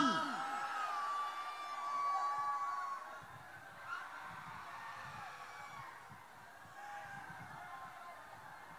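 A man's long, drawn-out nasal wail that holds one pitch and fades away over the first three seconds, followed by faint, scattered low sounds.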